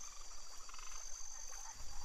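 Iberian water frogs croaking faintly, with a thin steady high tone behind them.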